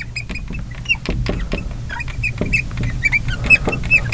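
Marker tip squeaking and ticking on a glass lightboard as words are handwritten: a quick, uneven run of short, high-pitched chirps and light taps.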